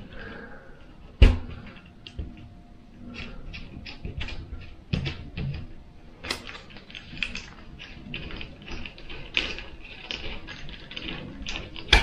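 Bent coat-hanger wire and a steel bolt clicking and knocking against a small timber frame as they are handled and fitted together, in irregular small taps. A sharp knock about a second in and another near the end are the loudest.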